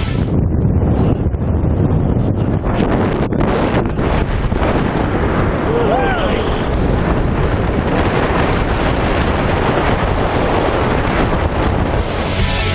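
Wind rushing and buffeting over the camera's microphone during a tandem parachute descent under the open canopy. About six seconds in there is a short shout from one of the jumpers.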